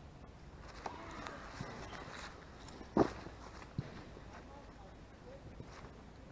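Footsteps in grass right beside the microphone, with a sharp thump about three seconds in and a smaller knock just under a second later.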